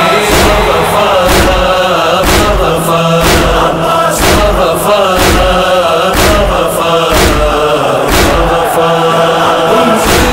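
A noha, a Muharram mourning chant, sung over a heavy beat that falls about once a second.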